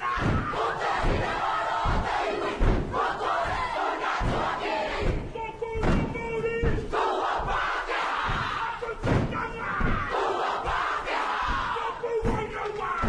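Kapa haka group performing a haka: many voices chanting and shouting in unison, punctuated by repeated heavy thumps of stamping feet and body slaps.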